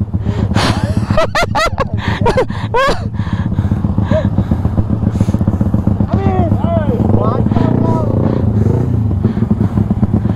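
Yamaha Y15ZR's single-cylinder four-stroke engine idling steadily at a standstill, with another motorcycle idling alongside.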